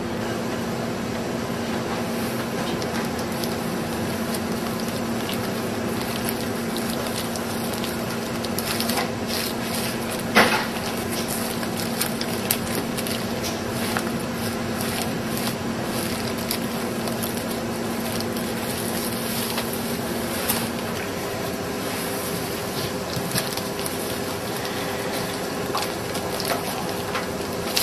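Bamboo sushi rolling mat handled and pressed by gloved hands: scattered light clicks and rustles from about a third of the way in, with one sharper click near the middle. Under it runs a steady hum whose pitch changes about five seconds before the end.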